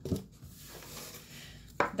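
Hands handling craft supplies on a wooden tabletop: a light knock right at the start, then soft rubbing and rustling.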